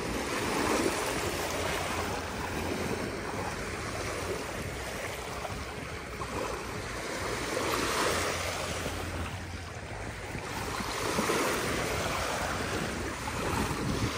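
Small waves of a calm sea lapping at the shoreline in shallow water, a soft wash that swells and fades every few seconds.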